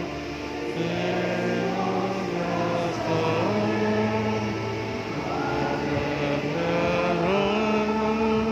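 Church choir and congregation singing a slow hymn together, with long held notes that step from one pitch to the next.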